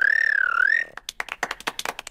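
A cartoon rabbit's special noise: a high, whistle-like note that wavers up and down for about a second and a half. It is followed by a patter of clapping from a group.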